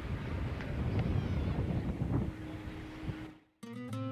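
Wind buffeting an outdoor camcorder microphone with a low rumble. It cuts off sharply a little after three seconds in, and after a brief silence a plucked acoustic guitar begins.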